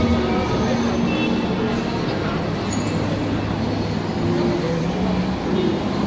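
City street traffic: the steady hum of passing road vehicles, heard from the sidewalk.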